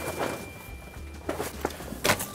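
Faint rustling of a PVC annex floor sheet being handled and spread out, with a couple of light knocks after about a second.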